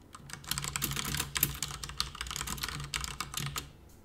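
Fast typing on a computer keyboard: a dense run of key clicks for about three seconds, stopping shortly before the end.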